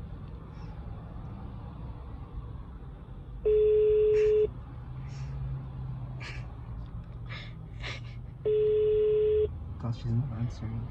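Phone call ringback tone from a smartphone on speaker: a steady single-pitched tone about a second long, heard twice, five seconds apart, the sign that the called phone is ringing and has not been answered.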